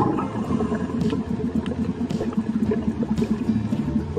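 Underwater ambience: a steady low rumbling flutter with scattered faint clicks.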